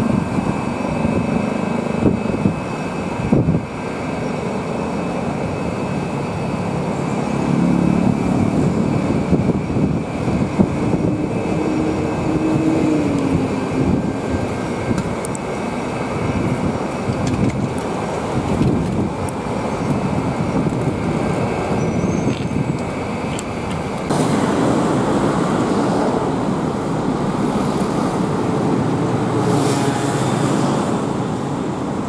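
Continuous city road traffic: cars and other vehicles running and passing on the street. An engine note rises and falls near the middle, and the traffic gets louder about 24 seconds in.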